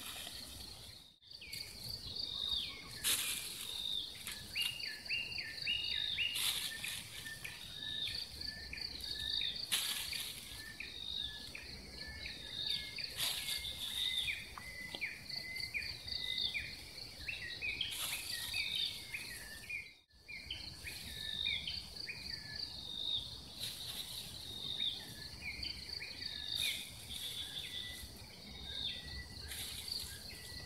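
Outdoor ambience of birds calling in quick, repeated chirps and short whistles over a steady, high insect trill, with a few brief bursts of noise. The sound dips out briefly twice, about a second in and near the middle.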